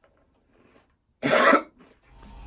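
A man coughs once, a single short, loud cough a little over a second in, after a near-silent pause.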